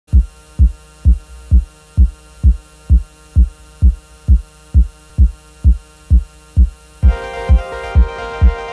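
Live hardware techno: a synthesized kick drum beats about twice a second, each hit dropping in pitch, over a faint steady hum. About seven seconds in, a louder sustained synth drone of several tones comes in under the kick.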